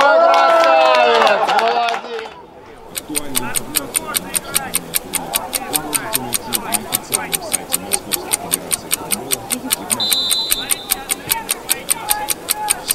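A man's loud excited "oh" for about two seconds, then steady rapid ticking, about four ticks a second, like a stopwatch sound effect. A short high whistle blast comes about ten seconds in, the referee's whistle for the kickoff.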